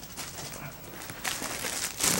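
Faint rustling and handling of plastic packaging and fabric as softbox parts are pulled out and moved about, growing louder near the end.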